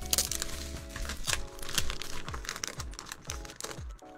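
A white paper envelope being ripped open by hand, with an irregular run of paper crinkling and tearing, over background music with a steady beat.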